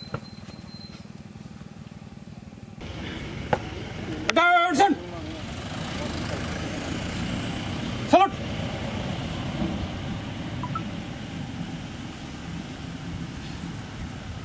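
Short shouted calls, one about four seconds in and a brief one about eight seconds in, over a steady outdoor background noise that rises suddenly about three seconds in, as a group stands for a salute.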